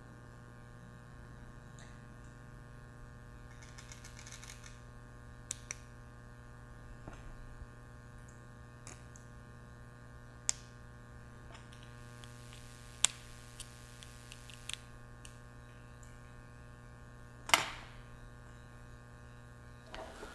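Small metal parts clicking and tapping a few times as a 22 mm planetary gearbox is fitted back onto a small brushless motor by hand. A steady electrical hum runs underneath.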